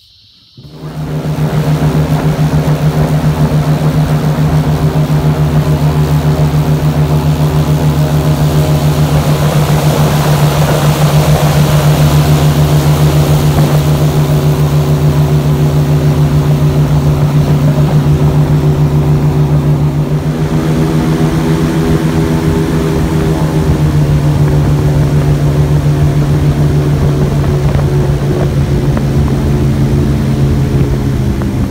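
Airboat's engine and air propeller running loud and steady at speed. It comes in suddenly about half a second in, and its pitch shifts slightly around twenty seconds in.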